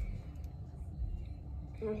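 Low steady rumble of car-cabin background noise, with a few faint clicks as a felt-tip marker and its cap are handled; a girl starts to speak near the end.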